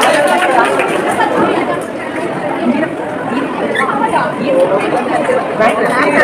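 Chatter of many people talking at once, with no single voice clear.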